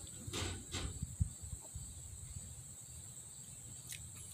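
Steady high-pitched chirring of insects in the background, with a few soft clicks and knocks in the first second and a half as cider is drunk from a glass mug and a bottle.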